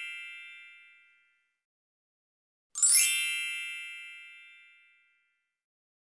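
Chime sound effect, bright and shimmering: the fading tail of one chime in the first second, then a second chime about three seconds in that rings out and fades away over about two seconds.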